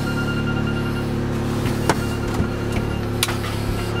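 A steady low hum with a few faint held tones, inside a taxi's cab. A push button clicks twice, about two and three seconds in: the photo booth's start button being pressed without result.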